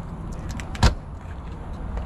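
Exterior storage bay door of a motorhome being unlatched and swung open: a few light ticks, then one sharp latch click just under a second in, over a low steady rumble.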